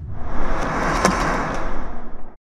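A video transition sound effect: a loud, noisy whoosh that swells in with a sharp hit about a second in, then cuts off abruptly.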